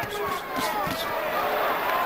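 Boxing-arena crowd noise, with a few thuds of gloved punches landing in the first second.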